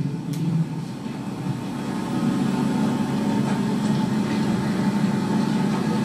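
Tour bus engine running steadily, a low drone, in old location sound played back over a room's loudspeakers.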